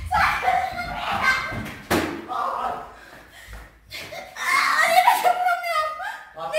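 Raised, unclear voices with one sharp thump about two seconds in.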